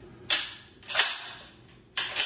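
Sharp metallic clicks from the action of a Daniel Defense Delta 5 bolt-action rifle in 6.5 Creedmoor, three of them about a second apart, as the bolt is worked to re-cock it between dry fires.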